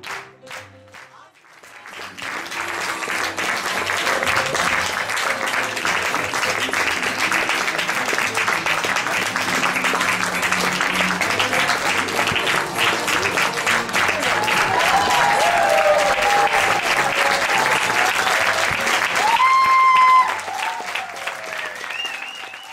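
Theatre audience applauding, swelling in about two seconds in and holding steady until it drops off near the end, with cheers rising out of it in the last seconds. Piano keeps playing underneath.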